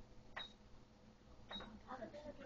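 Two short clicks with a brief high beep, about a second apart, from the ultrasound machine's control keys being pressed. Soft voices start near the end.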